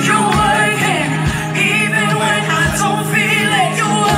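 Live worship music: several singers on microphones singing a gospel song over a full band.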